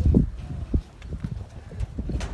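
A bull's hooves thudding on hard dirt ground as it comes down off a livestock truck during unloading: a few heavy thuds, the loudest right at the start.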